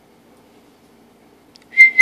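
A person whistling to call dogs: a short, loud, steady whistled note near the end, with a second note starting to rise just after it, over faint room noise.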